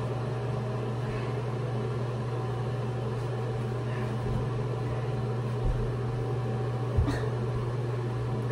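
A steady low mechanical hum, heard in a small bathroom, with two soft thumps near the end.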